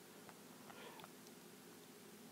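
Near silence: faint room tone with a few very faint short ticks.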